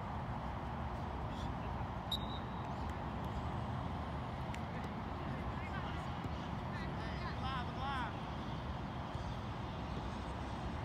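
Soccer players' distant voices calling across the pitch over a steady low background rumble, with one voice calling out more clearly about seven to eight seconds in.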